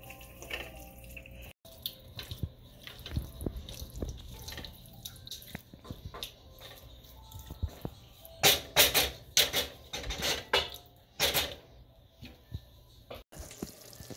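Wooden spoon stirring a thick, wet spinach and chicken curry in a steel pan: soft wet squelches and light knocks of the spoon against the pan, with a run of louder scrapes about two-thirds of the way in.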